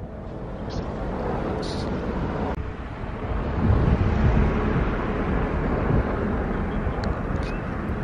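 Steady outdoor rumble of wind rushing across the camera microphone, strongest in the low end.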